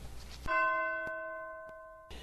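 A single bell strike about half a second in, ringing with several steady tones and slowly fading away.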